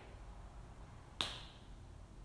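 A single sharp finger snap a little over a second in, over quiet room tone.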